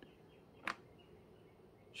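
Near silence with a faint room tone and a single short click about two-thirds of a second in.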